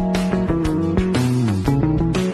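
Hollow-body electric guitar playing an R&B/soul groove, moving quickly between notes and chords with sharp picked attacks.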